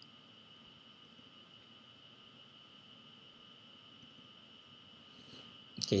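Quiet background with a faint, steady high-pitched whine; speech begins at the very end.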